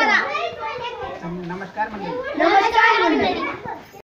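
Children's voices, several at once, talking and laughing, louder about two and a half seconds in and fading at the end.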